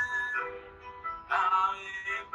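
A man singing a slow French worship song in long held notes, one phrase dying away and a new one starting past the middle.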